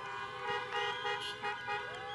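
Several car horns honking together in long, steady, overlapping tones: a crowd of drivers sounding their horns in place of applause.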